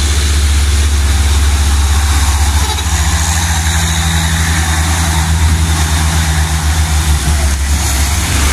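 Mitsubishi Fuso FN 527 dump truck's diesel engine pulling uphill as it passes close by: a deep, steady engine drone, with a higher hum joining from about three seconds in. A steady hiss of rain and wet road lies over it.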